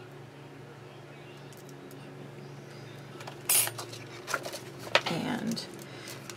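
Metal cutting die and plates clinking and clattering as they are handled on an electric die-cutting machine, starting a little over halfway through, with one sharp click just before the end.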